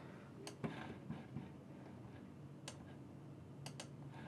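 A few faint, sharp computer mouse clicks, about five, spaced unevenly, with the last two close together near the end.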